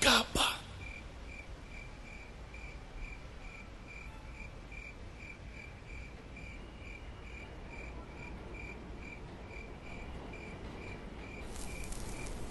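A faint, evenly pulsed high chirp, like a cricket's, repeating about twice a second over a low steady hum.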